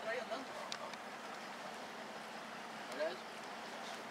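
Brief fragments of a person's voice, once right at the start and once about three seconds in, over a steady low background noise.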